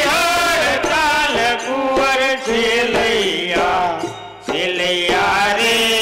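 A voice singing a chant-like song with held, wavering notes over musical accompaniment, amplified through a stage sound system. There is a brief pause about four seconds in before the singing resumes.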